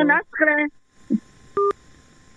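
A single short electronic telephone beep, two tones sounding together, about a second and a half in, over a faint steady hiss: the phone line signalling as a call-in caller's call ends.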